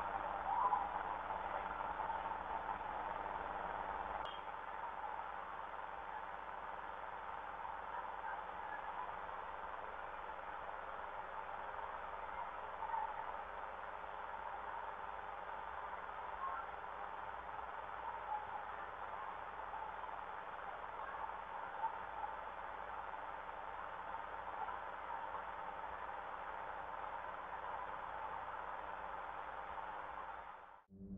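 Security-camera audio at night: a steady whirring hum from an outdoor AC unit that drowns most other sound, with a few faint, short sounds rising above it now and then.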